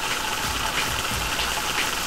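A steady hissing noise texture from an electronic composition, with faint scattered clicks and an uneven low rumble beneath.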